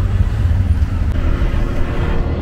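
Auto-rickshaw ride heard from inside the cab: the small engine running with street traffic and road noise, a steady heavy low rumble.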